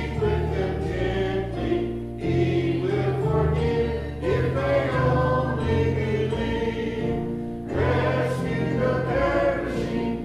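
Mixed church choir of men and women singing a gospel hymn together, with instrumental accompaniment holding low sustained notes that change every second or two.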